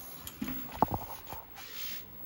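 Quiet room noise with small handling sounds: a faint short low sound about a quarter of the way in, a single sharp click a little under halfway through, and a soft hiss near the end.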